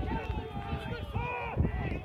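Several voices shouting at once across a rugby pitch during open play, with overlapping raised calls and no clear words.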